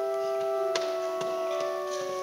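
Church organ playing slow, held chords that change from one chord to the next, with a few sharp clicks over it, the clearest a little under a second in.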